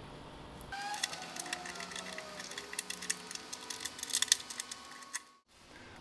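Rapid light metallic clicking and ticking of a small Allen key working a bolt into a jack nut in a vehicle's rear door, with a faint squeal sliding down in pitch as it turns. The sound cuts out briefly near the end.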